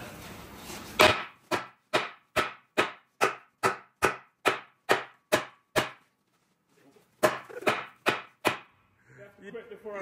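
Sledgehammer striking the steel plate of a tank hull: a quick run of about a dozen blows, roughly two and a half a second, then a short pause and four more blows. The blows are meant to hammer a mark out of the hull plate.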